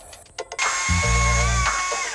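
Background music with a deep bass line. From about half a second in, a STIHL battery chainsaw runs with a steady high electric whine as it cuts through a pine board.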